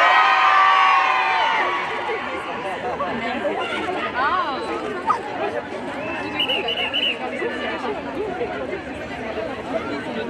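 Crowd of onlookers calling out, loudest and highest-pitched in the first two seconds, then a dense babble of many voices with a few raised calls.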